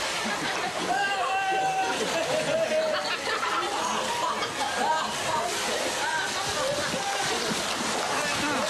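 Excited voices calling out over water splashing as several people run and fall into shallow lake water.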